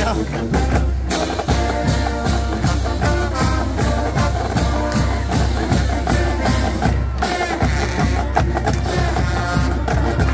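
Marching band music: brass lines over a steady drum beat.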